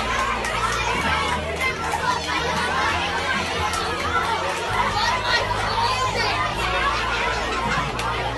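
A room full of children chattering and calling out over one another, many voices at once, with no single voice standing out.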